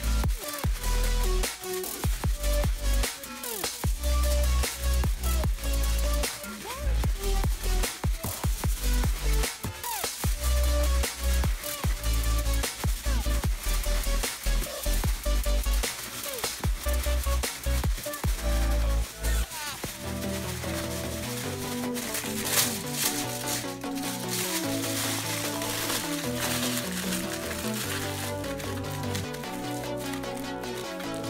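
Background music with a beat and heavy bass for the first two-thirds; about 20 seconds in, the bass drops out and a lighter, steadier melodic part continues.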